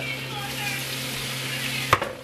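Marinated chicken pieces sizzling as they are laid into a hot nonstick frying pan, over a steady low hum. A sharp click comes near the end.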